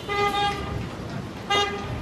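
A vehicle horn honks twice on one steady pitch: a toot of about half a second near the start and a short one about a second and a half in, over street traffic noise.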